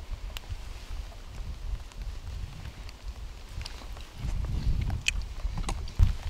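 Low rumble on the microphone, swelling for a couple of seconds near the end, with a few faint scattered clicks.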